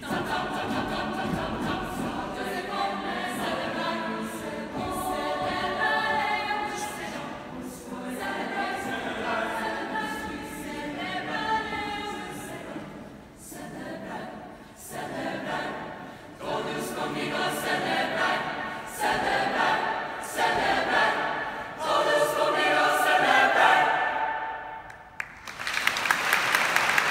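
High school chamber choir of mixed voices singing in phrases broken by short breaths. The singing grows louder toward a final climactic chord near the end, and applause breaks out right at the close.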